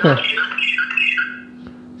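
Garbled, squawking call audio from a phone's loudspeaker just after the call is switched to speakerphone: a run of short, high chirpy tones lasting about a second, then dying away.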